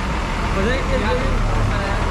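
Steady low rumble of a running motor-vehicle engine, with faint voices in the background about halfway through.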